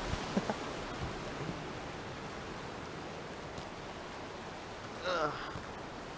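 Ocean surf as a steady, even wash, with a few faint light knocks in the first second and a half.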